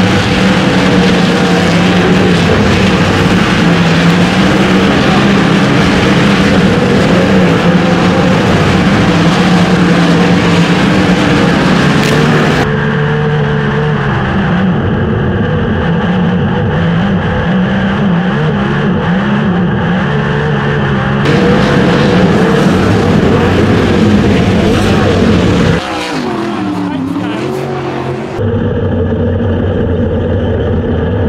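Sprint car's 410 V8 heard from the onboard camera, running hard at race speed with wind and dirt noise. The note backs off about halfway and picks back up. Near the end the revs fall away, dip and settle into a slower, lower running as the car comes off the track.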